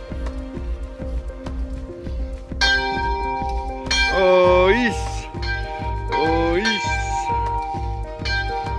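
Background music with a steady bass beat, held notes, and a voice singing two long notes that glide up and down, about four and six seconds in. A small chapel bell rings under the music.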